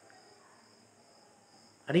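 Near-quiet pause with a faint, steady high-pitched tone in the background. A man's voice starts right at the end.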